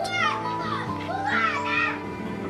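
Young children's high voices calling out as they play, once at the start and again about a second in, over soft background music with sustained notes.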